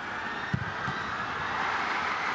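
Stadium crowd noise swelling steadily as a goal is scored, with one dull thud about half a second in.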